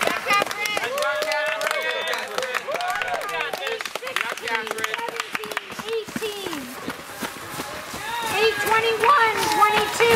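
Girls' voices shouting and cheering on passing cross-country runners, high-pitched calls that grow louder near the end, with runners' footsteps on the trail.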